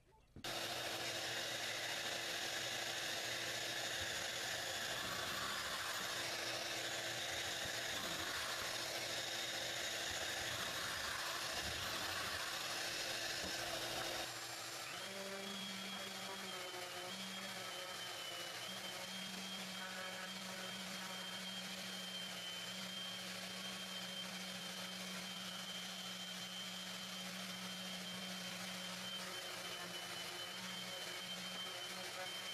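A power tool runs steadily for about fourteen seconds. It is followed, after a cut, by a random orbital sander with a dust-extraction hose running steadily on small wooden boards, with a low hum and a thin high whine.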